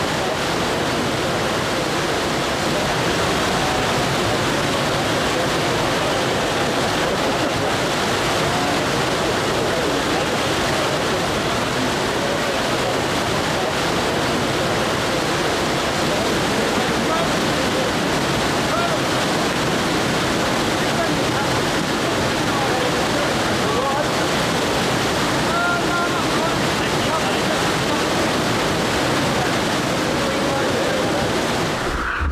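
Water rushing steadily out of a concrete outlet and down an earth channel as inflow into a reservoir, a loud, unbroken rush. A crowd's voices are faintly audible under it.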